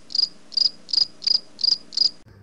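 Cricket chirping sound effect, short high chirps at an even pace of about three a second, dropped in as the comic 'crickets' gag for an awkward silence when nobody answers the welcome.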